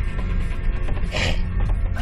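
Vehicle cabin rumble while driving slowly over a rough dirt two-track, with a brief louder noise about a second in.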